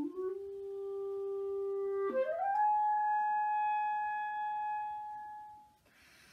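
Solo clarinet playing unaccompanied: a quick upward run to a held note, then a second quick run up to a higher note held for about three seconds that fades away near the end.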